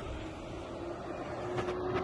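A faint, steady motor hum that grows slightly louder, over outdoor background noise.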